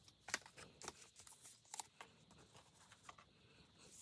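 Faint, scattered rustles and small taps of paper being handled as torn magazine pieces are laid onto a paper collage.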